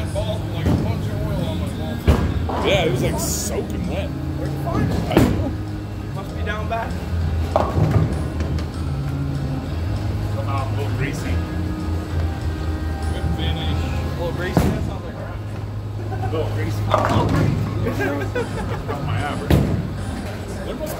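Bowling alley noise: background music and chatter over a steady low hum, broken by several sharp knocks and crashes. These are bowling balls landing and rolling and pins being struck, one of them from a ball delivered about five seconds in.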